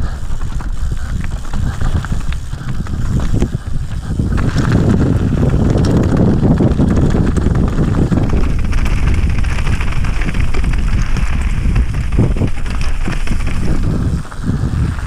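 Mountain bike running fast downhill over dirt and loose rocky gravel: a steady rush of tyre noise and wind on the microphone, broken by many small knocks and rattles as the bike hits bumps. It gets louder about four seconds in and stays loud.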